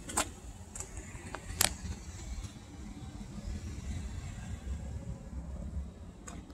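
A low, uneven rumble of a motor vehicle, with a few sharp clicks in the first two seconds.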